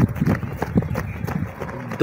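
Footfalls of several runners on a dirt field: quick, irregular, overlapping thuds as a group runs past close by.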